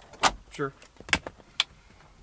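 Handling noises in a truck cab: a few sharp clicks and knocks with rustling as a package in a plastic bag is picked up from the seat.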